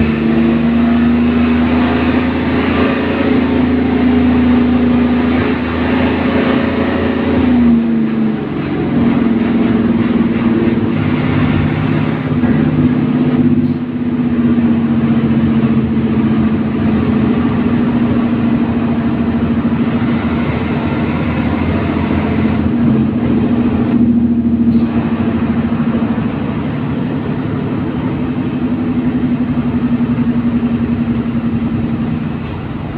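Isuzu MT111QB city bus's diesel engine heard loud from inside the cabin while the bus drives, a steady engine note over road noise. About eight seconds in the note drops and the low rumble briefly falls away before it pulls again.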